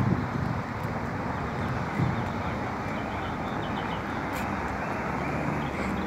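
Steady street traffic noise from cars on the road, a continuous even rumble with no distinct events.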